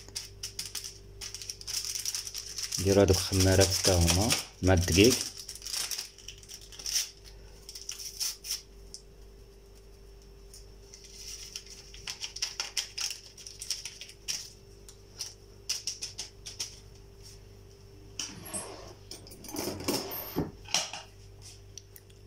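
A small packet being handled, torn and shaken over a plate of dry ingredients: irregular crinkling and rattling clicks, with a steady low hum underneath. A voice speaks briefly a few seconds in and again near the end.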